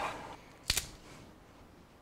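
One short, sharp click while a short length of coax cable is being stripped by hand to pull out its centre conductor.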